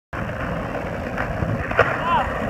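Skateboard wheels rolling over a concrete path with a steady rumble. A single sharp knock comes near the end.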